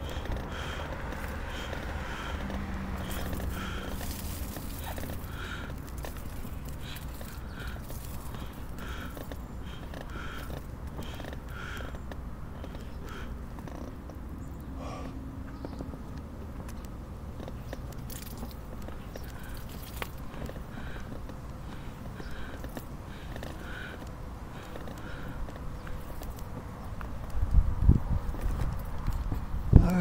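Manual wheelchair being pushed uphill over pavement. The wheels keep up a steady low rumble, and a short rhythmic sound comes about once a second with each push stroke. A few louder low thumps come near the end.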